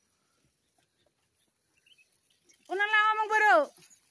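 A person's voice: one drawn-out, high-pitched call lasting about a second, near the end, rising at the start and falling away at the close.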